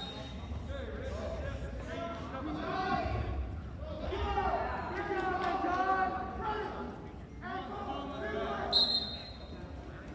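Indistinct voices of several people talking and calling out in a gymnasium, with low dull thuds underneath. There is a brief high-pitched squeak near the end.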